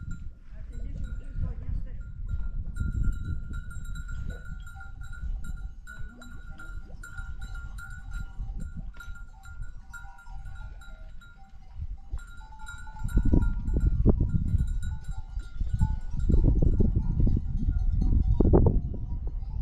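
Bells on a grazing flock of goats ringing and clinking steadily, with loud low rumbles coming in about two-thirds of the way through and again near the end.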